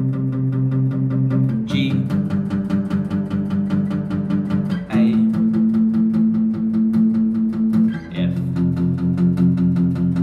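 Steel-string acoustic guitar, a Maton, strummed in a steady rhythm through the progression C, G, A minor, F, each chord held for about three seconds.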